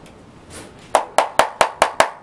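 Six quick, sharp hand strikes in an even run, about five a second, starting about a second in.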